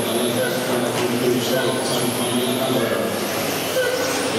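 Electric radio-controlled touring cars with 13.5-turn brushless motors whining round an indoor track, under a voice echoing over a public-address system.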